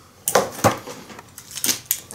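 Hard plastic flying-toy helicopter being handled: a few sharp, irregular clicks and knocks as it is picked up and turned over.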